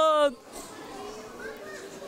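A voice ending about a third of a second in, then faint background chatter of a crowd with children's voices.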